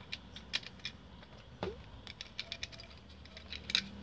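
Scattered light clicks and taps of hard plastic parts being handled as a Bluetooth speaker's plastic housing is pulled apart and its small button piece lifted out. There is a sharper click near the end.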